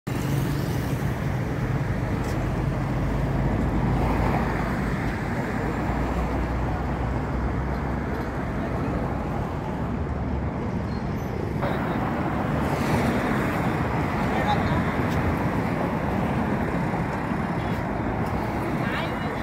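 Steady rumble of road traffic, with indistinct voices mixed in.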